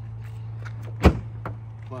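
A single sharp thump about a second in, over a steady low hum.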